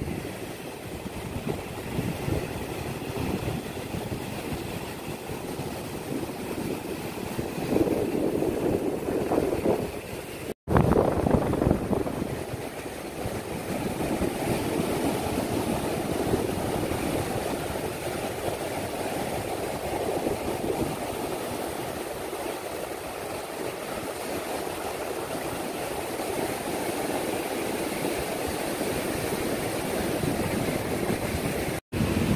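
Strong sea wind buffeting the microphone, a gusty rumble over the wash of surf breaking on a sandy beach. The gusts swell loudest about a third of the way in, where the sound drops out for an instant at a cut.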